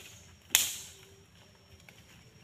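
A single sharp crack about half a second in, fading quickly.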